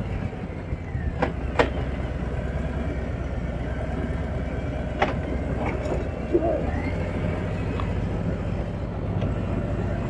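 Harley-Davidson touring motorcycle's V-twin engine running steadily at an easy pace downhill, a low even rumble with road and wind noise, and a few short clicks.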